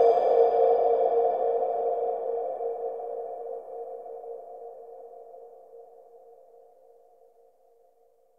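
The closing chord of a chillwave/electronic track, held and fading out slowly. Its upper tones die away first, and only a soft tone around the middle of the range is left before it is gone near the end.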